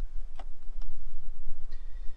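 Two light clicks as the awning rail is handled against the roof channel, over a steady low rumble.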